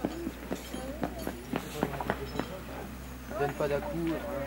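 A horse's hoofbeats on a sand arena: a run of short, irregular knocks, about four a second, over the first two and a half seconds.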